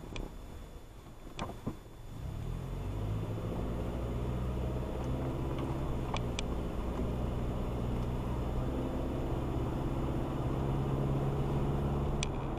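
Car engine and road noise heard from inside the cabin: quiet at first while the car waits at a stop, then rising about two seconds in as it pulls away and settles into a steady cruise. A few light clicks sound early on and again near the middle.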